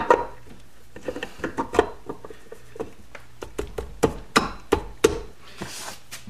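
Irregular light knocks and clicks of a polished aluminum alternator cover being pushed onto a Honda CB750 engine case and seated against its gasket. There are a dozen or so separate taps, the louder ones in the second half.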